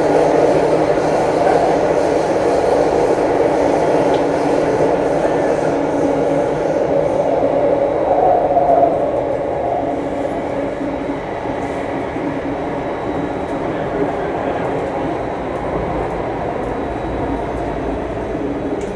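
Steady running noise of a Singapore MRT Circle Line train, heard from inside the carriage, easing off slightly in the second half.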